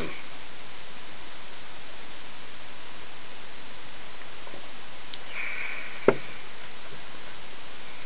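Steady hiss, with one sharp click about six seconds in, as a man drinks beer from a glass.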